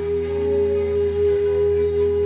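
String section of violins, violas and cellos holding one long sustained note, with a steady low tone underneath.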